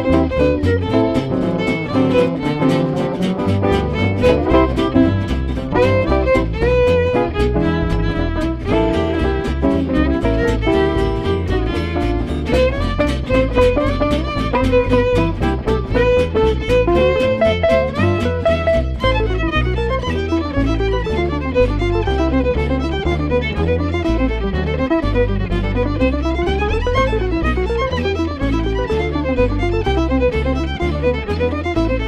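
Gypsy jazz played live on violin, acoustic guitars and double bass: the violin carries the melody with vibrato over an even, chopping rhythm-guitar strum and a walking bass line. In the second half fast runs climb and fall over the same steady beat.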